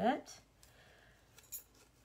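Quiet room, with one brief light scrape of craft materials being handled about a second and a half in: a wooden board and a transfer sheet moved on a cutting mat.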